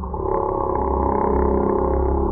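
A cartoon song's singing voice and orchestral backing, slowed right down so the voice comes out deep, drawn-out and groaning, with a muffled, dull sound.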